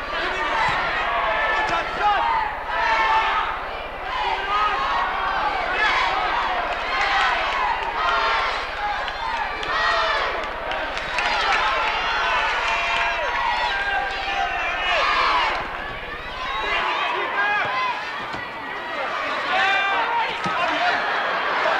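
Continuous speech, with a low steady hum underneath that cuts off suddenly near the end.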